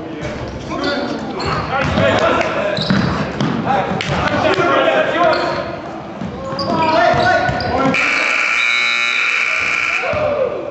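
Basketball game in an echoing gym: a ball bouncing on the hardwood floor amid players' voices. About eight seconds in, a steady electronic scoreboard buzzer sounds for about two seconds and cuts off.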